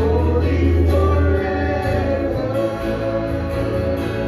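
Live worship band with several voices singing together, over a held bass note that gives way about a second and a half in.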